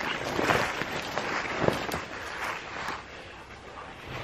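Footsteps and rustling through leaves and brush while walking in woods, an irregular crackling shuffle with a few sharper snaps. It grows a little quieter near the end.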